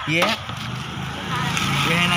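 A person talking over a steady low hum of a motor vehicle running, with a single sharp click about a quarter second in.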